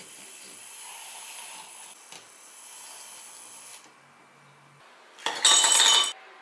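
Handheld battery milk frother whirring steadily as it whisks milk and cheese powder in a glass measuring cup, for nearly four seconds. Near the end, a loud clatter of ice cubes dropping into a ribbed glass tumbler.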